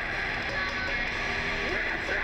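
Electric guitar played loosely through a stage amplifier, a few short wavering and sliding notes, over a steady wash of noise.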